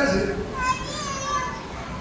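Children's voices: high-pitched chatter heard about half a second to a second and a half in, with no deep adult voice over it.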